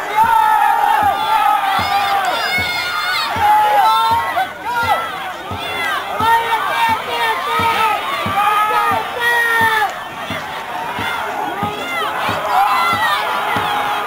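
A crowd of spectators shouting and cheering, many voices overlapping, with steady low thumps about twice a second underneath.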